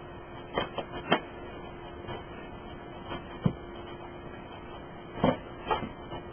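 A handful of short knocks and clicks, some in quick pairs, over a steady low hum.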